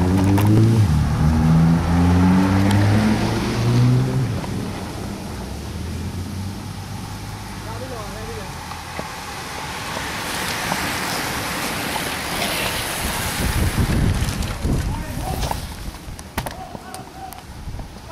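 A car driving past with its engine pitch rising in steps as it accelerates, loudest in the first four seconds. About ten seconds in, a bunch of road racing bicycles goes by with a swelling rush of tyres and wind, followed by low gusts of wind on the microphone.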